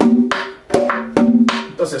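Dominican merengue tambora played with a stick and the open hand in a steady repeating pattern: a ringing drum-head stroke about every 0.4 s, with lighter clicks on the wooden rim between them. This is the simple 'lomaco' tambora pattern.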